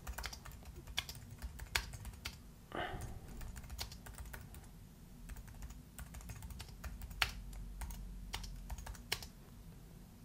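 Typing on a computer keyboard: a quiet run of irregular keystroke clicks at an uneven pace.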